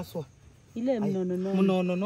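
A woman's voice: a short spoken sound at the start, then one long, steady held vocal note from under a second in that lasts over a second.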